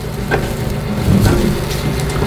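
Battered cod fillets being laid into a metal air fryer basket, with a few soft taps, over a steady low hum.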